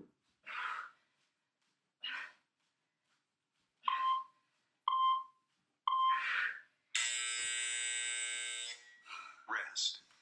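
Heavy exhalations from a woman working through mountain climbers, with an interval timer counting down: three short beeps about a second apart, then a long buzzer of about two seconds marking the end of the work interval. A few more breaths follow the buzzer.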